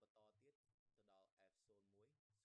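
Near silence, with a very faint voice talking.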